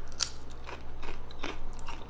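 A person chewing a crispy fried onion: a run of irregular crunches.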